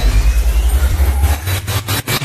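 Electronic intro sound effect: a heavy, fast-pulsing bass under a noisy hiss. It thins out about a second and a half in and ends in a few short stuttering cuts.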